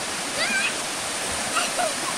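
Steady rush of a small waterfall pouring into a rock pool, with one short high-pitched cry about half a second in.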